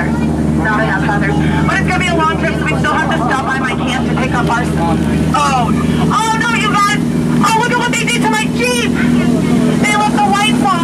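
Tour boat's motor running with a steady low hum, under voices and quick, high warbling sounds that are densest in the second half.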